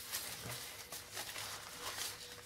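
Faint rustling and crinkling of thin silnylon fabric being picked up and handled.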